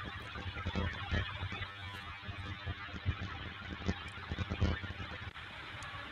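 Faint steady hiss with scattered soft clicks on a video-call audio line, with no clear speech, from a panelist's microphone that had been catching weird sounds.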